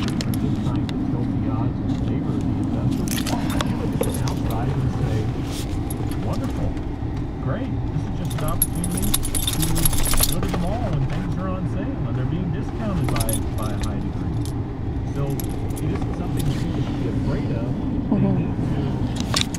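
Steady low rumble of a car cabin with the engine running, with small metal pieces jingling several times, most strongly about halfway through.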